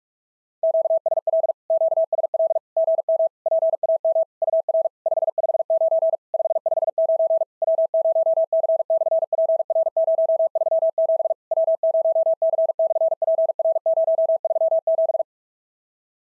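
Morse code sent at 45 words per minute as a single mid-pitched keyed tone: a fast run of dits and dahs with short breaks between words, starting about half a second in and stopping about a second before the end. It carries a SOTA contact reply with the signal report 559 559 and the summit reference W0C/PR-037.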